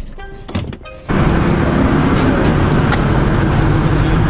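Music with a beat that cuts off about a second in, replaced by the loud, steady rumble of a vehicle engine running, with hiss mixed in.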